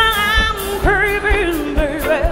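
Live band music: a woman sings a bending, wavering vocal line over a steady drum beat with electric guitar and keyboards.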